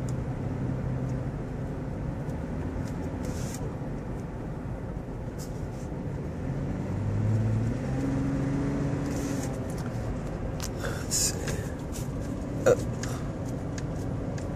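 Cabin sound of a 2015 Toyota 4Runner's 4.0-litre V6 on the move: steady engine and road noise, with the engine note rising and getting a little louder for a few seconds about halfway through as it accelerates.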